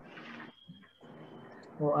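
A man's low, drawn-out hum or held "mmm" that stops about half a second in. His speech begins near the end.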